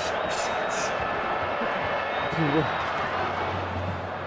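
Steady crowd noise with a short, indistinct voice about two and a half seconds in.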